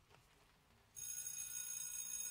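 Near silence, then about a second in a single high sustained musical note begins and holds steady, rich in overtones: the start of a piece, before the brass comes in.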